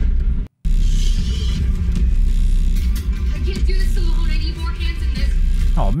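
Film soundtrack from an ambulance chase scene: a music score over a heavy, steady vehicle rumble. The sound cuts out completely for a moment about half a second in, then picks up again.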